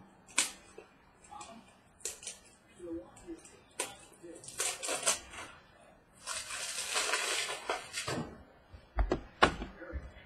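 Trading cards and packaging handled on a tabletop: scattered clicks and rustles, a scratchy rustle lasting about two seconds in the second half, and a few knocks near the end as the next sealed box is reached for.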